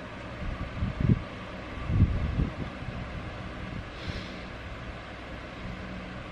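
Low rumbling bumps on the microphone from a handheld camera being moved, about one and two seconds in, over steady background noise.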